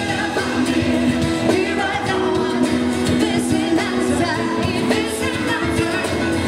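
Live pop song: a singer's voice over acoustic guitar and band, played through a concert sound system.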